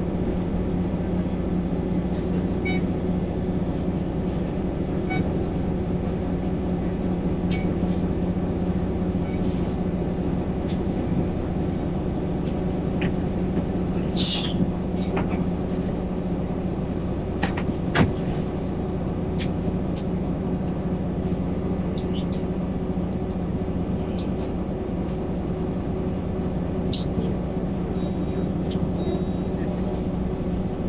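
Inside a Mercedes-Benz Conecto city bus: its OM936 six-cylinder diesel running with a steady, even drone. Loose cabin fittings rattle and click over it, with a sharp click about eighteen seconds in and a brief hiss about halfway.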